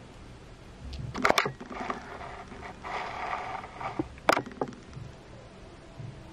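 Close-up handling noise on a small camera: a few sharp clicks and taps, a cluster about a second in and one more about four seconds in, with rubbing and scraping in between.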